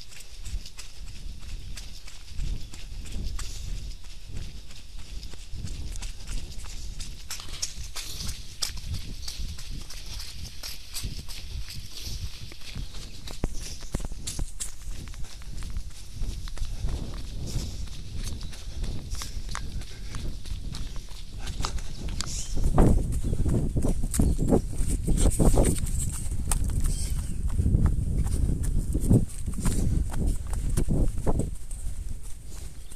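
A runner's footsteps on a grassy, muddy trail, a steady run of footfalls picked up by a body-worn camera. From about two-thirds of the way in the sound turns louder, with a low rumbling under the steps, as the pace drops toward a walk.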